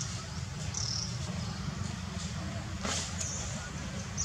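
Outdoor ambience: a steady low rumble with short, high chirps scattered through it, and a single sharp click about three seconds in.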